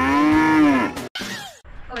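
A cow's moo used as a comic sound effect: one long call that rises and then falls in pitch, lasting about a second, then breaks off.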